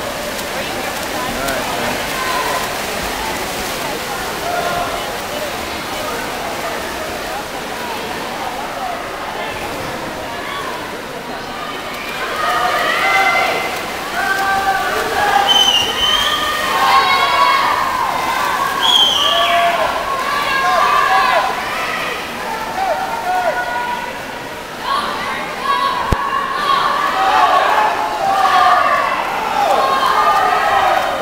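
Spectators shouting and cheering over the splashing of backstroke swimmers. The shouting grows louder and busier about twelve seconds in.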